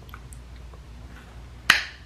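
A single sharp snap with a short ring after it, near the end, over faint room noise.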